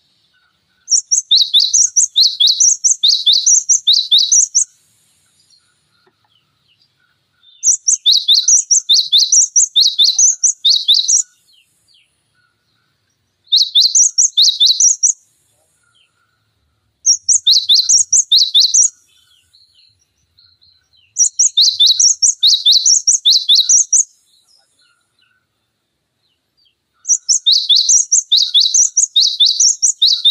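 Cinereous tit singing: six bursts of a rapidly repeated two-note phrase, a higher note then a lower one, about two phrases a second. Each burst lasts two to four seconds, with short pauses between.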